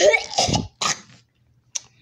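A child's voice making wordless exclamation noises for under a second, then a short breathy burst, then near quiet.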